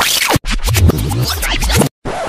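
Scratching sound effect, like a DJ record scratch, in two loud chunks: a short one, then one of about a second and a half, each cut off abruptly into silence.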